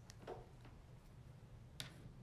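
Near silence with a few faint clicks and one sharper click near the end, from a smartphone being handled and tapped.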